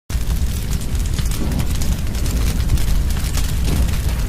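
Fire-and-explosion sound effect: a steady, dense rumble with heavy low end and crackle running through it.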